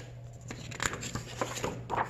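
Paper page of a picture book being turned by hand: a run of short rustles and light flaps of the page, coming more often in the second half.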